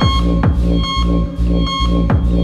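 Electronic dance music from a club DJ set: a steady kick drum about twice a second under a sustained synth bass and held synth tones.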